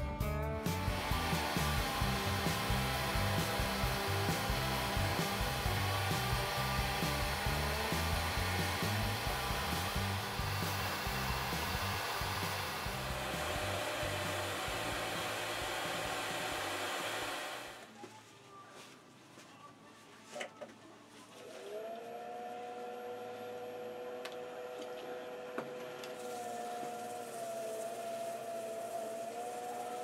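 Wood lathe running with a steady whirring noise that stops about 17 seconds in; after a few quiet seconds with a couple of clicks, the lathe's motor whine starts again and holds steady, rising slightly in pitch.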